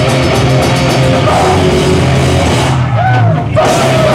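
Live metallic hardcore band playing loud distorted guitars, bass and drums. The cymbals drop out for about half a second near the end, then the full band comes back in.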